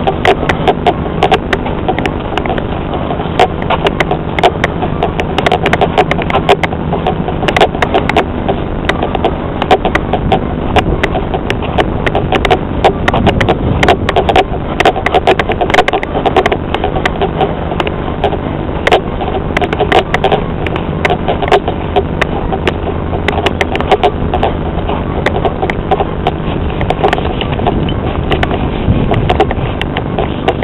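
A vehicle travelling along a rough dirt road: a steady engine hum under constant rattling and knocking from the bumpy ride.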